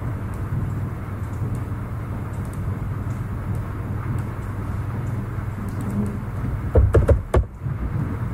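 Steady low hum with background hiss, with faint clicks here and there and a cluster of sharper clicks about seven seconds in.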